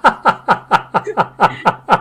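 A person laughing in a run of short, evenly spaced 'ha' bursts, about four or five a second, each falling in pitch.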